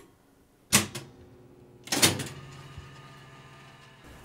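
Jukebox mechanism clunking twice, about a second apart. After the second clunk a steady low hum sets in as the machine runs.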